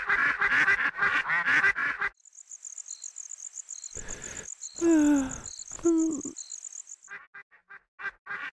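Ducks quacking in a fast chatter for about two seconds, then a steady high chirping of crickets. Over the crickets an elderly woman's voice gives two falling groans about halfway through.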